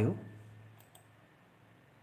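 A man's voice trailing off in the first half second, then near silence with a couple of faint clicks about a second in.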